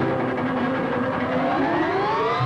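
Cartoon soundtrack: held music tones, then near the end a rising, siren-like whine for the gadget spinning up.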